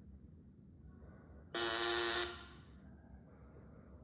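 A synthesized text-to-speech voice says a single short 'oh' on one flat pitch about a second and a half in, played through a laptop's speakers; the rest is quiet room tone.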